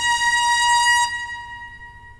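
Jazz orchestra brass holding a single high sustained note that cuts off about a second in, leaving a fading tail.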